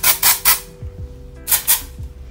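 Aerosol dry shampoo (Batiste) sprayed into hair in hissing bursts: three quick short sprays in the first half second, then one longer spray about one and a half seconds in.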